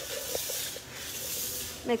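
A sanitizing fogger machine spraying disinfectant mist with a steady hiss.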